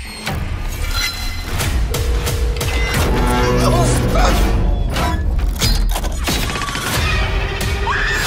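Horror trailer score and sound design: a heavy low rumble under a rapid run of sharp hits and crash-like impacts, with a held tone from about two to four seconds in.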